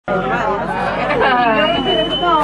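People talking, several voices overlapping in chatter, with a thin steady high tone in the last half-second.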